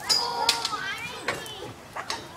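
Children's voices shouting and calling out in high pitch, with no clear words.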